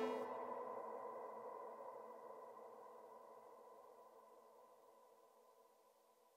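The final sustained chord of a song dying away: a few steady held tones that fade slowly and evenly to almost nothing over about six seconds.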